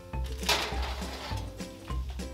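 Background music, with a metal baking sheet clattering and scraping as it is pulled off the oven rack about half a second in.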